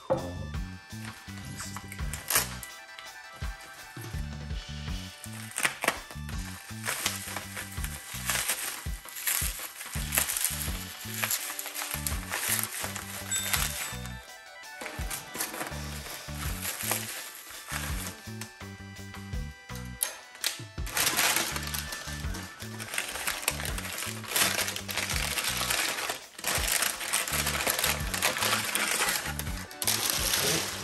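Background music with a running bass line, over intermittent crinkling and rustling of bubble wrap and paper wrapping being handled and cut open.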